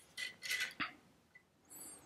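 Light metallic clicks and clinks as the spring plug of a Kommando carbine is worked out of its steel receiver tube, a few in the first second, then a brief scrape near the end.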